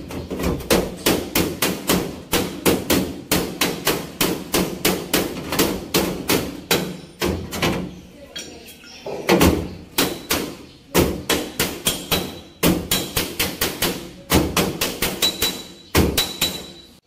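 Steel body panel of a Mitsubishi L300 van's rear wheel arch being hammered: quick, even metal strikes, about three a second, with a couple of short pauses partway through.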